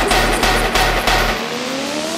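Dubstep electronic music: a heavy sustained bass with rapid synth hits, which drops out about one and a half seconds in as a rising synth sweep begins.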